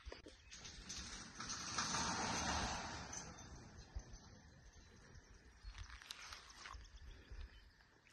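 Faint outdoor wind noise on a phone microphone, swelling for about two seconds near the start and then dying down.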